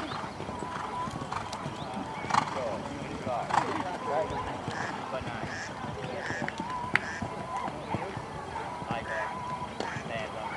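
Hoofbeats of a horse cantering across a sand show-jumping arena, mixed with indistinct voices, with a few sharper knocks.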